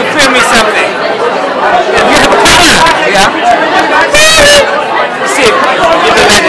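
Close-up speech over dense crowd chatter in a busy room, with two brief high-pitched bursts about two and a half and four seconds in.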